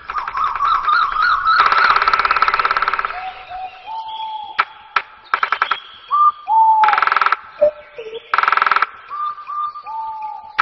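A songbird singing: clear whistled notes, some wavering or falling in pitch, alternating with four short spells of very fast rattling trill.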